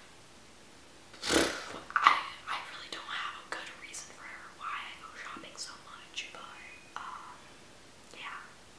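A young woman speaking quietly, close to a whisper, in short breathy phrases that start about a second in.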